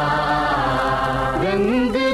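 Old Hindi film song playing. Notes are held at first, then a gliding melodic line comes in about one and a half seconds in.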